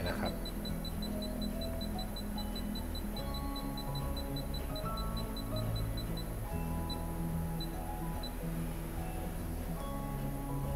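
Background music, with a rapid string of short, high electronic beeps, about five a second, from a Mast Touch tattoo power supply's touchscreen as the voltage is slid up in 0.1 V steps. The string stops about six seconds in, and two or three single beeps follow.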